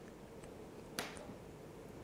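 Near silence with faint room tone, broken once about a second in by a single short, sharp click.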